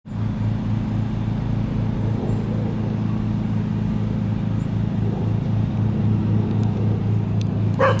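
A steady low machine hum with a slight even pulse, the sound of a motor running.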